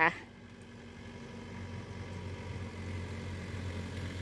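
A steady low engine hum with faint steady tones above it, like a motor running at idle, growing a little louder over the first two seconds and then holding.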